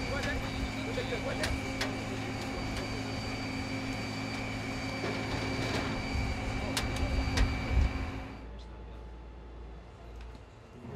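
Parked airliner's turbine running, with a steady high whine over a low hum, and a few sharp clicks. It cuts off suddenly about eight and a half seconds in, leaving quieter room noise.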